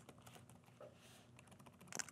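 Faint computer keyboard typing: a few soft, scattered key clicks as a query is typed in.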